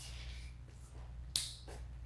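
A single sharp click a little past halfway, over a low steady hum of room noise.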